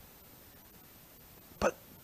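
Near silence, room tone in a pause of a man's speech, then a single short spoken word about one and a half seconds in.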